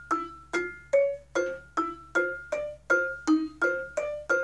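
Vibraphone played with mallets: a single-note line at a steady pace of about two and a half notes a second, each bar ringing and fading before the next is struck.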